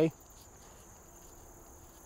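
Faint, steady, high-pitched trilling of insects outdoors, unbroken through the pause in talk.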